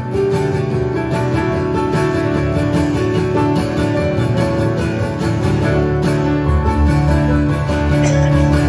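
Acoustic guitar and stage keyboard playing an instrumental passage together live, the guitar picked and strummed over held keyboard notes. Deeper bass notes come in strongly about two-thirds of the way through.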